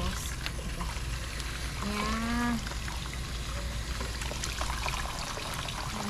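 Water spraying from a garden hose nozzle onto a snake plant's root ball and splashing down into a basin of water, washing the soil off the roots. A short voice sound comes about two seconds in.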